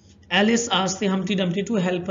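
Only speech: a man lecturing in Hindi, starting after a brief pause at the very beginning.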